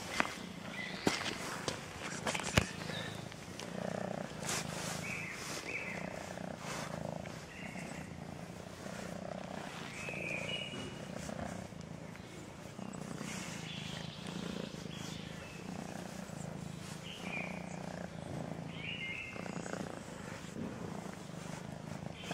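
Domestic cat purring close to the microphone while being stroked, a steady low purr that swells and eases with each breath. A few sharp knocks in the first three seconds.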